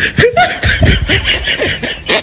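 Human laughter in quick repeated bursts.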